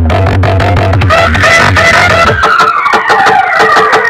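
DJ dance music played very loud through a truck-mounted stack of horn loudspeakers. A heavy bass beat stops about a second and a half in, leaving higher melody lines with a falling sweep.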